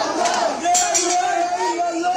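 A street protest crowd of men shouting and chanting together, loud and close, with voices held on a long, wavering cry.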